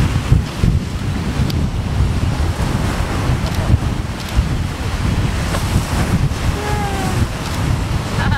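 Wind buffeting the camera microphone in a heavy, gusting rumble, over the steady wash of surf breaking on the beach.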